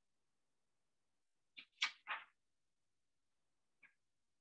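Three short noisy swishes in quick succession about a second and a half in, then a faint brief one near the end, against near silence.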